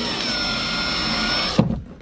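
Power drill driving a screw to fasten a motor mount plate to a kayak, winding up at the start and running steadily before stopping about one and a half seconds in. A short knock follows just after it stops.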